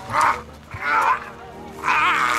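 A man giving short yells of pain, three cries spaced about a second apart, over background music.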